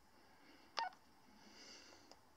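A single short electronic beep from a PMR two-way radio about a second in, followed by faint hiss.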